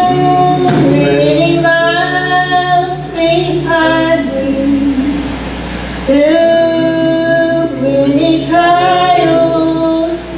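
Women singing a gospel song, with a break in the singing about halfway through.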